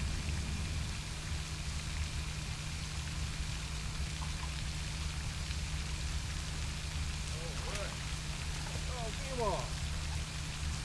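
Pond fountain's spray falling back onto the water: a steady splashing hiss like light rain.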